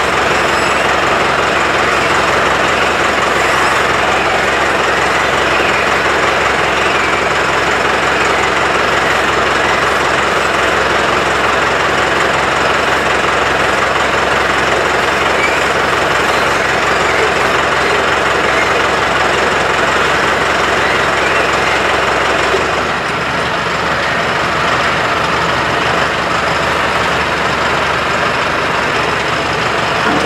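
Mahindra 8560 diesel tractor engine working hard under full load as the tractor pulls against a chained load cell, with its tires spinning on the sandy concrete floor. About two-thirds of the way through, the low engine note drops and the sound changes, then the heavy pull carries on.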